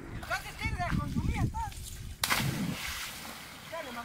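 A person jumping from a tree branch into estuary water: a loud splash about two seconds in. Short shouts from the group come before it and again near the end.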